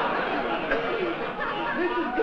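Studio audience laughing, the laughter dying down about a second in as a man's voice begins to come through.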